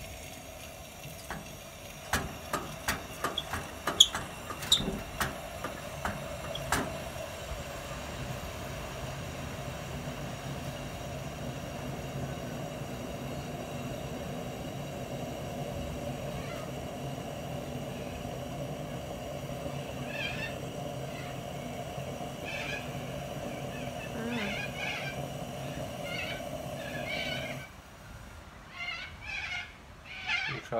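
A few sharp clicks, then a Coleman NorthStar dual-fuel lantern's pressurised burner hissing steadily while lit. Near the end the hiss stops suddenly as the fuel valve is shut.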